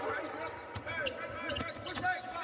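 Basketball being dribbled on a hardwood court, a few sharp bounces that echo in the arena, over a faint murmur of crowd voices.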